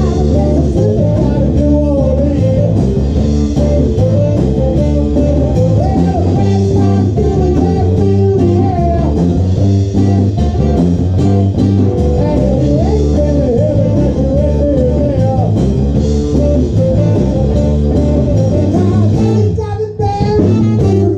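A blues-rock band playing live with electric guitar, bass guitar, drum kit and saxophone, under a lead singer at a microphone. The steady beat and a wavering melody line run throughout.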